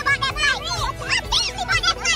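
Several women's voices whooping and calling out excitedly in high pitches that sweep up and down, with music playing underneath.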